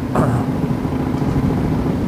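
2009 Yamaha Raider S V-twin running straight-piped at a steady cruise, a steady low exhaust drone.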